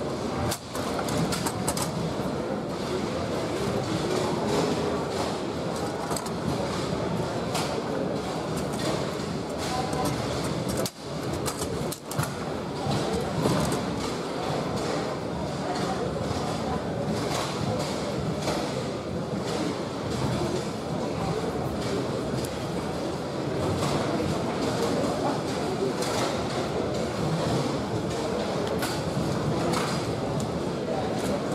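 Foosball play on a Bonzini table: repeated sharp clacks of the ball being struck and of rods and handles knocking. Under them runs a steady murmur of voices in a large hall.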